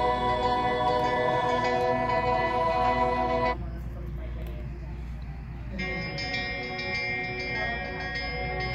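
Soft music with held tones from a demo video, playing through a Google Pixel 2-series phone's loudspeaker. It drops away about three and a half seconds in, leaving faint room noise, and music starts again from the other phone's speaker about six seconds in.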